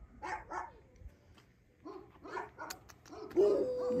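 Several short animal calls in scattered bursts.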